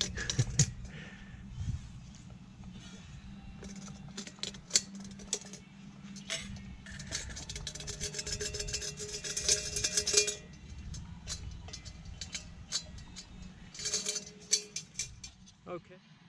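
Metal camping cook pot clinking and knocking against a metal plate as it is handled and tipped upside down. The light clinks and scrapes come in a busy run around the middle, with a brief metallic ring, and again near the end.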